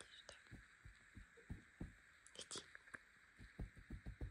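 Near silence: faint room tone with a steady hiss and scattered soft, irregular low thumps and a few light clicks.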